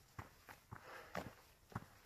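Faint footsteps of a hiker walking along a trail, a handful of short steps.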